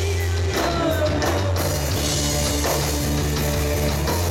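Live rock band playing at a steady loud level: electric guitar, bass guitar and drum kit.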